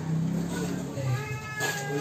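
A young child's high-pitched, drawn-out cry about a second in. It holds steady, then drops in pitch at the end, over other voices.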